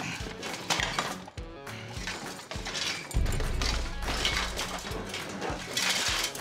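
Knocks and clatter of household items being pulled out and moved around in a storage locker, over background music.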